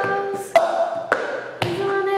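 Cup-song rhythm: a cup tapped and slapped on a table with hand claps, sharp strikes about every half second, under a woman's held, wordless sung notes.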